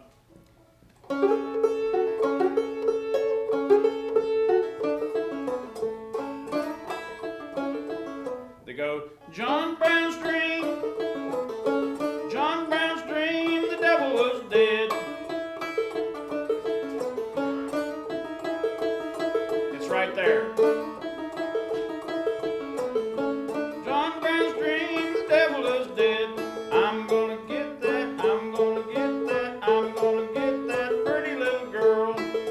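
Open-back five-string banjo fingerpicked in Roundpeak style, playing an old-time tune over a steady repeated high drone note. It starts about a second in, breaks off briefly around nine seconds, then runs on.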